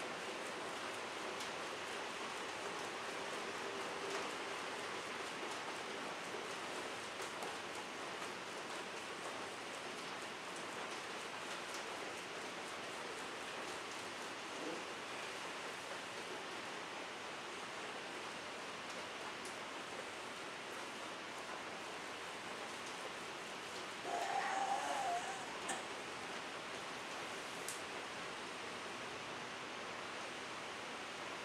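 Steady background hiss, with a short louder sound about twenty-four seconds in.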